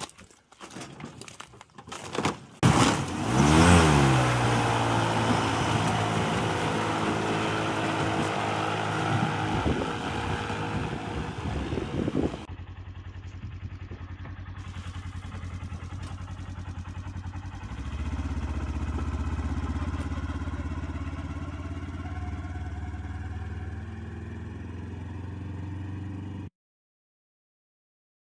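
Electric airboat's propeller spinning up about 2.5 s in, its pitch rising for a second, then running loud and steady with a rushing wash of air. About halfway through this gives way to a quieter, steady lower hum that swells slightly a few seconds later.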